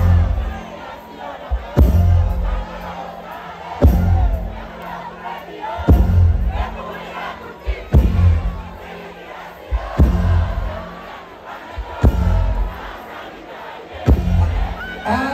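Live concert music through a PA, a heavy bass beat about every two seconds, with a large crowd shouting and cheering over it.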